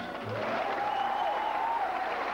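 Theatre audience applauding as the dance music ends, with a last low note of the music just at the start. A long drawn-out cheer rises and falls over the clapping.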